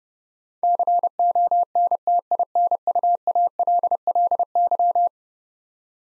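Morse code sent at 30 words per minute as a single steady-pitched tone keyed in dots and dashes, spelling the word "continually". It starts about half a second in and stops about five seconds in.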